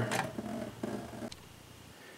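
Faint trickle and handling noise as a sprouting tray is tilted to drain rinse water into a kitchen sink, fading away over the first second or so, with a small click before it drops to quiet room tone.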